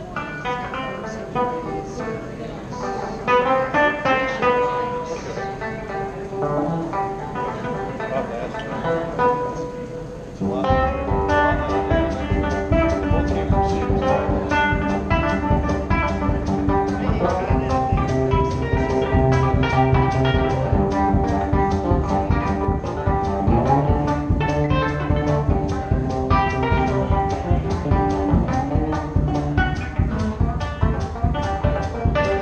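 Electric guitar played live, picked notes at first, then about ten seconds in it becomes louder and fuller with a steady bass-drum beat underneath.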